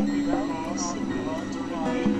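Dense layered mix of several music tracks playing at once: held drone tones under a repeating run of short arched pitch swoops, with voice-like sounds mixed in.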